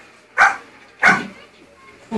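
A dog barking twice, short sharp barks about half a second and a second in, played through a television's speaker.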